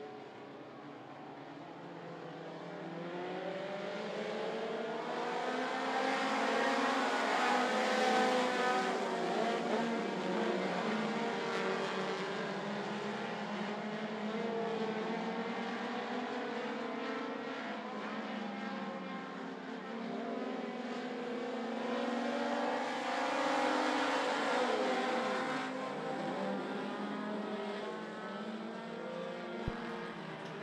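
A field of four-cylinder dirt-track stock cars racing, several engines revving and backing off together through the turns. The sound grows over the first several seconds, is loudest about eight seconds in, and swells again a little past twenty seconds.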